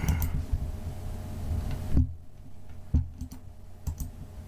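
A handful of computer mouse clicks, about five spread over a few seconds, the sharpest about halfway through, over a low rumble that drops away at that point.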